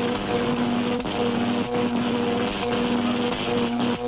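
Sci-fi shrink-ray sound effect: a low electronic buzz that pulses on and off about every two-thirds of a second over a dense noisy rush with scattered clicks.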